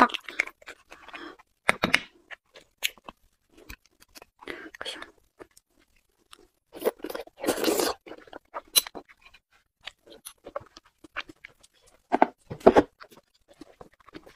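A person eating beef bone marrow close to the microphone: small spoon clicks and scrapes against the bone, with soft wet chewing and mouth sounds. They come in scattered short bursts, the loudest about eight seconds in and again near twelve.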